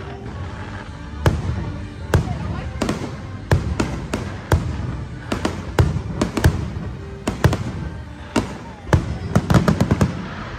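Aerial fireworks shells bursting: a string of sharp bangs at uneven intervals, coming thick and fast near the end, with music and voices underneath.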